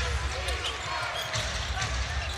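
Basketball being dribbled on a hardwood arena floor, a run of low bounces, over the steady murmur of the arena crowd.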